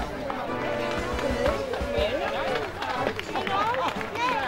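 Voices of people talking over background music, outdoors.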